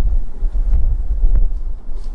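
Low rumbling wind-like noise on a handheld microphone held close to the mouth, with a faint tick or two.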